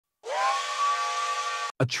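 Steam train whistle blowing one long blast over a hiss of steam. Its pitch slides up at the start, then holds steady, and it cuts off suddenly.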